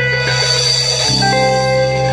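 Live band music: a held, sustained chord that moves to a new chord about a second in, with no drum strokes.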